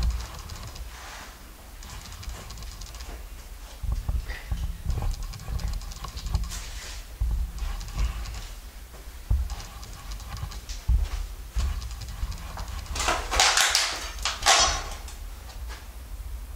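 Footsteps and handling noise from a handheld camera moving through an empty room, with dull low thumps throughout, then two louder noisy scrapes about three seconds and one and a half seconds before the end.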